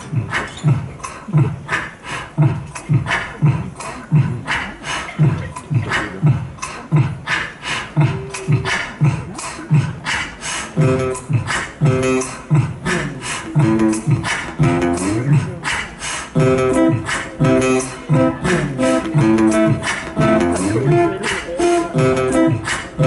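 Beatboxed kick-and-snare beat, mouth percussion into a microphone, built up live on a loop pedal into a steady repeating groove. From about ten seconds in, an acoustic guitar riff is layered over the looping beat.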